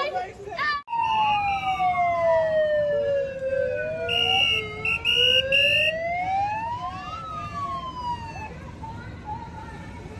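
Emergency-vehicle sirens in a slow wail, two overlapping, gliding down and back up in pitch, with three short horn blasts about four to six seconds in. The sirens fade toward the end.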